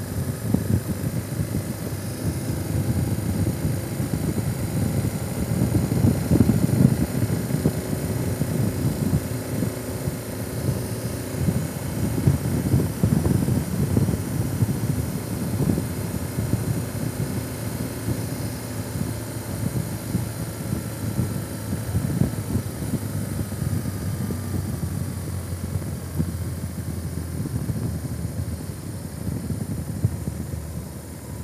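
Motorcycle engine running at road speed under heavy wind rush and buffeting on the microphone. The engine note falls slowly about three quarters of the way through.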